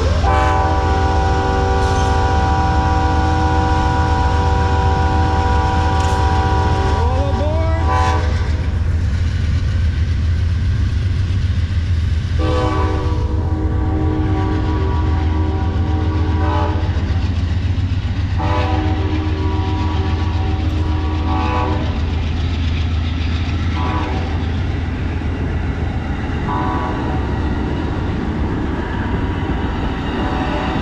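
Amtrak GE Genesis diesel locomotives pulling a passenger train past, the horn sounding a chord over the low rumble of engines and wheels. First comes one long blast of about eight seconds. After a pause follow two more long blasts, then a short one, then a final brief one.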